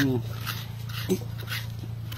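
Soft flesh of a young green coconut (buko) being scraped from its shell in light, irregular strokes, over a low steady hum.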